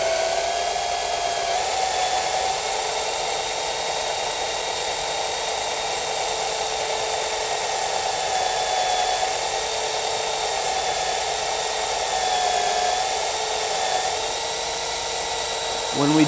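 IML Resi F300 resistance microdrill running as its thin needle bit drills into a timber piling: a steady motor whine whose pitch wavers slightly as the bit meets the wood's growth rings.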